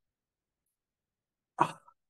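Dead silence for about a second and a half, then a short 'ah' from a man's voice near the end.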